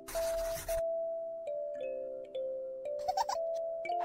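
Light cartoon intro jingle of held, bell-like mallet notes, with a loud swish in the first second and a short squeaky flourish about three seconds in.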